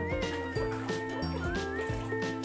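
Upbeat background music with a steady bass pulse, held chords and a bright gliding melody line on top.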